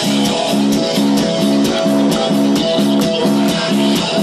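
Metal band playing live: a chugging electric guitar riff over drums, repeating about two and a half times a second, with a held high note above it.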